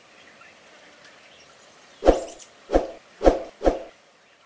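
An animal calling four times in quick succession, starting about halfway through, over faint background ambience.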